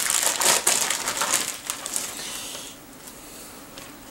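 Clear plastic bag crinkling and crackling in the hands as it is worked open, dying down about two-thirds of the way through.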